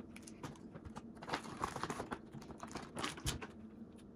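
Someone eating a chocolate square: quiet, irregular small clicks and ticks from chewing and from handling its foil wrapper.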